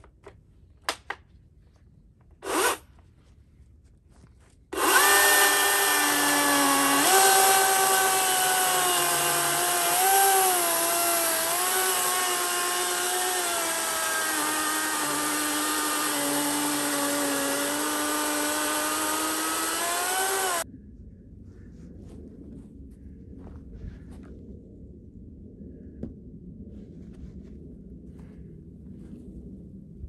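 DeWalt brushless battery chainsaw running for about sixteen seconds while cutting into a log, its electric whine dipping in pitch a few times as the chain bites into the wood, then cutting off suddenly. A few short clicks come before it starts.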